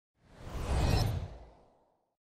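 A whoosh sound effect for a logo reveal: a single noisy swell with a deep low rumble that builds and then fades away over about a second.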